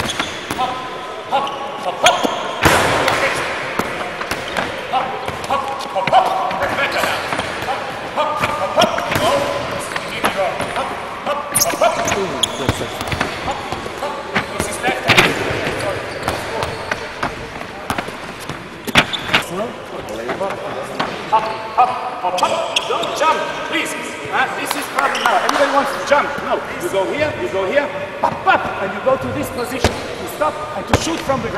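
Handballs bouncing on a wooden sports-hall floor as players dribble, a series of short sharp bounces, with voices talking in the hall throughout.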